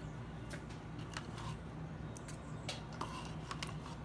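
Faint, scattered light clicks and taps, about seven in four seconds, over a steady low hum of room tone.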